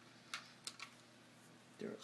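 A few light, sharp clicks of small plastic model-kit parts being handled, the loose plastic tailgate tapped against the model truck; a voice starts near the end.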